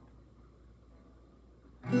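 Acoustic guitar: a short quiet pause, then near the end one chord is strummed and rings out loudly.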